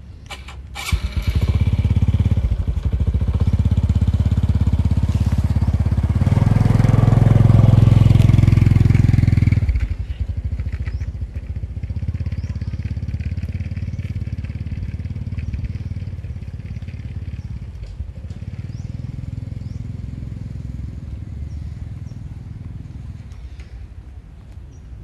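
An engine starts running about a second in, loudest around six to ten seconds in, then drops suddenly and runs lower until it fades near the end.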